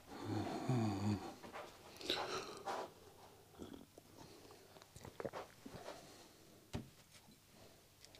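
A short low vocal sound from a man near the start, then quiet sips from a coffee mug and soft handling clicks.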